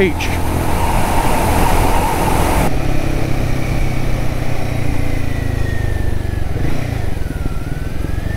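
Royal Enfield Guerrilla 450's single-cylinder engine running as the bike is ridden on a wet road, under heavy wind and road noise. The wind and road noise drops sharply about three seconds in, leaving the engine's steady low note and a faint whine that slowly falls in pitch.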